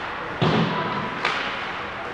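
A loud thump about half a second in, echoing through the ice arena, then a sharper knock about a second later: hard hits against the rink boards during play.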